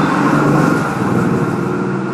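Steady noise of a motor vehicle, loudest early on and slowly fading.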